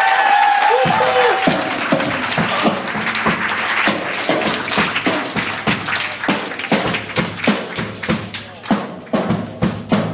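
A live rock band's final note ends about a second in, followed by audience clapping and cheering that thins out toward the end.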